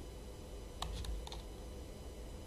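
A few faint computer keyboard keystrokes clicking around the middle, over a low steady hum.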